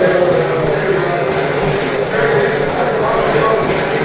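Gloved punches landing on a small chain-hung heavy bag fitted with a frame of bars, in an uneven series of knocks, with voices in the background.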